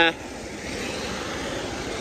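A car passing on a wet road: a steady hiss of tyres on water.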